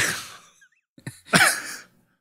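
A man's breathy, mostly voiceless laughter: a sharp burst of breath at the start that trails off, then another short breathy laugh about a second and a half in.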